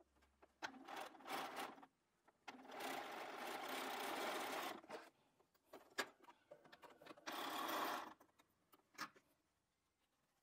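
Domestic sewing machine stitching a seam through cotton patchwork in stop-start runs: a couple of short bursts, then a steady run of about two seconds, then another short run, with small clicks in the pauses between.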